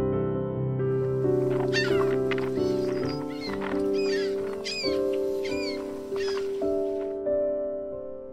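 Soft piano music with a wild bird calling repeatedly over it: about eight short, arching high calls between about two and six seconds in, over a faint outdoor hiss.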